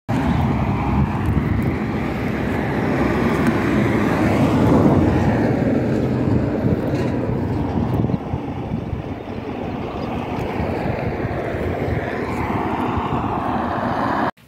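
Loud, steady roar of a passing motor vehicle, its tone slowly sweeping up and down.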